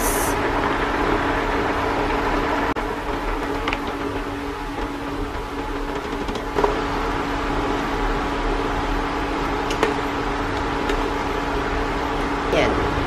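A large pot of soup broth boiling on an electric cooktop under a steady humming drone. Diced carrots are tipped in a little past the middle, with a soft splash and a faint clink.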